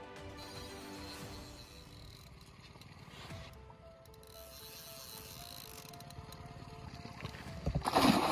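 Background music with held, stepping notes; near the end, a hooked carp splashes and thrashes at the water's surface close to the boat.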